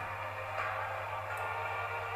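Faint background music under a steady low hum, in a gap between spoken sentences.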